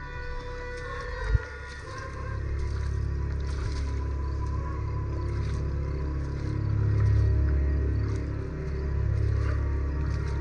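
Film score: a low, dark drone that swells to its loudest about seven seconds in. There is a single thump about a second in.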